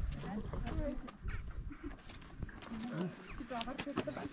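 Faint voices talking, with a few soft clicks.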